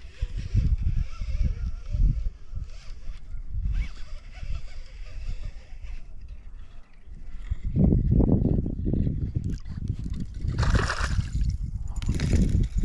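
Water splashing and sloshing at the side of a kayak as a hooked bass is brought in, mixed with rumbling rubs of a sleeve against the camera microphone. It grows louder and busier in the last few seconds.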